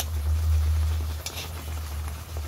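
Steady low rumble under a faint sizzle from a whole chicken cooking in oil and garlic butter on a comal, with a short crackle about a second in.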